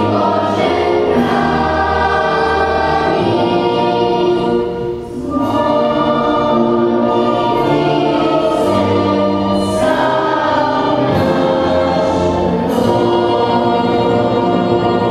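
A choir singing slow phrases of long held notes, with a short break between phrases about five seconds in.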